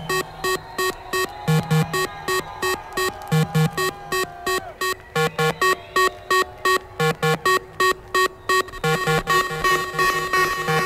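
Techno from a live DJ set: a fast, evenly repeating synth-stab pattern over a beat, with a wavering held synth line that drops out about halfway through.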